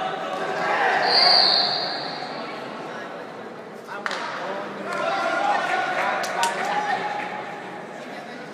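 Shouts and voices echoing in a large sports hall, with a shrill high tone lasting under a second about one second in. A sharp knock comes around four seconds in and a few more a couple of seconds later, as Nippon Kempo fighters' blows land on protective armour.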